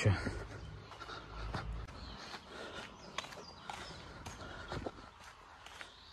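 Footsteps on a dirt road: soft, uneven steps as a person walks, with a brief low rumble of wind on the microphone about a second in.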